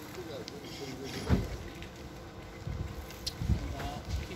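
Outdoor background noise: a low rumble with faint distant voices, and a single short knock about a second in.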